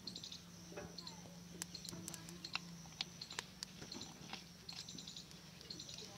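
Faint pouring of cooking oil from a bottle into an aluminium kadhai, over sparse sharp clicks and short high chirps in the background.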